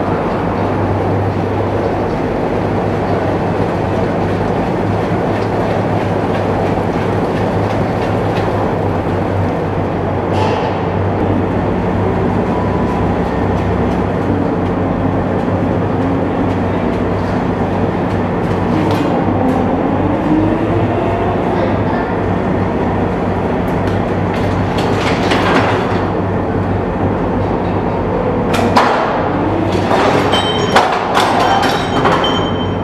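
AAV-7A1 amphibious assault vehicle's diesel engine running steadily while the tracked vehicle drives slowly across a steel deck. A pitch rises and falls briefly near the middle, and a few sharp metallic clanks from the tracks come near the end.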